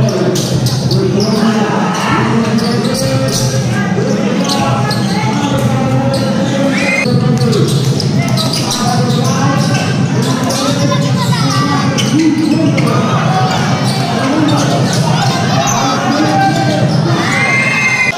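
Crowd at a basketball game chattering, shouting and cheering, with the ball bouncing on the court in short repeated knocks. A couple of single shouts stand out, one about seven seconds in and one near the end.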